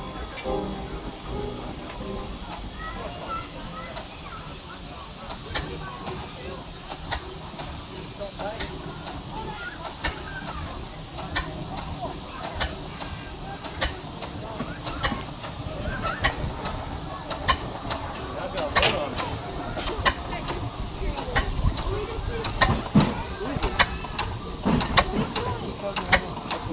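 Antique machinery running: a steady steam hiss with irregular sharp mechanical clicks and knocks, more frequent in the second half, over background voices.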